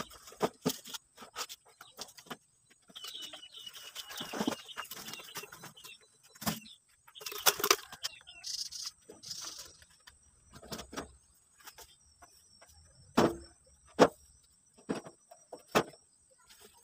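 Cut branches and logs knocking and clattering as they are handled, dropped on a woodpile and moved with a steel wheelbarrow: a string of separate knocks, with a few sharp, loud ones near the end.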